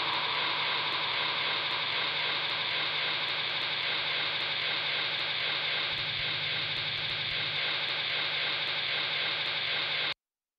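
Steady static-like hiss with a faint low hum and faint ticking about three times a second: a noise outro at the end of a song. It cuts off abruptly at the very end.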